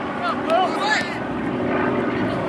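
A steady low engine drone runs underneath, while short shouted calls from players and spectators are loudest about half a second and one second in.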